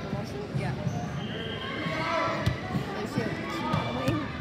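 A basketball bouncing on a hardwood gym floor: a few sharp, uneven bounces echoing in a large gym, with voices around.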